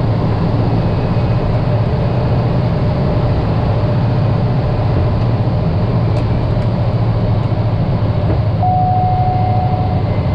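Single turboprop engine and propeller of a Cessna 208 Caravan running steadily, heard inside the cockpit as the aircraft rolls along a wet runway. A short steady tone sounds near the end.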